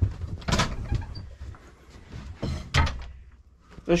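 Wooden hut door being handled and swung open, with a sharp knock about half a second in and a couple more knocks a little before three seconds.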